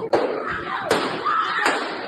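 Three sharp bangs about three quarters of a second apart, gunshots picked up by a passenger's phone inside a subway train, with raised voices between them.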